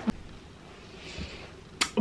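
Quiet room tone with a faint rustle about a second in, then a single sharp click near the end.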